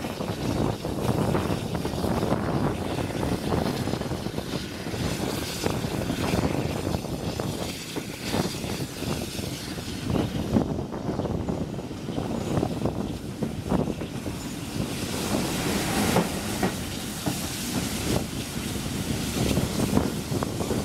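A steam-hauled passenger train running along the track, heard from an open coach window: the wheels clack and knock over the rail joints against a steady rush of wind and running noise.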